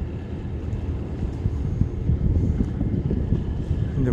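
Wind rumbling and buffeting on the microphone: a steady low, fluttering rumble.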